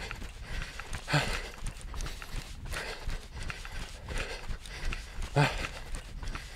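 A man breathing heavily and out of breath after jogging, in repeated loud breaths, with two strong voiced gasping breaths about a second in and near the end.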